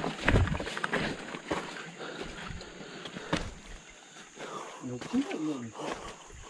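Footsteps on stream-bed stones and the rustle of cut banana leaves being handled, with scattered sharp clicks and knocks. A voice speaks briefly near the end.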